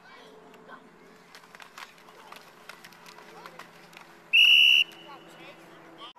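A referee's whistle blown in one short, loud blast of about half a second, about four seconds in, ending the play. Before it come scattered knocks and clacks from the players.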